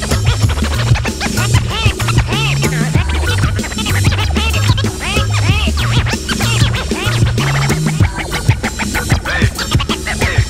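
Hip-hop beat with turntable scratching over it: a sample pushed back and forth on the record in quick rising-and-falling sweeps. Underneath run a stepping bass line and a steady drum pattern.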